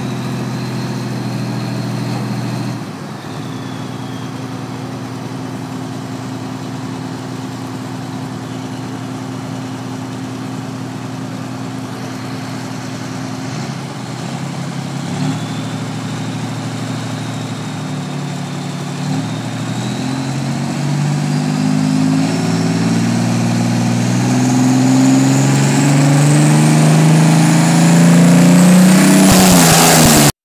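Diesel engine of a modified pulling tractor hooked to the weight sled, running steadily and then building revs over the second half: the pitch climbs, a high whine rises with it, and it is loudest near the end as it comes up toward full throttle for the pull.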